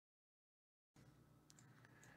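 Near silence: the sound track is completely dead for about the first second, then comes back as faint room tone with a low steady hum and a couple of faint clicks.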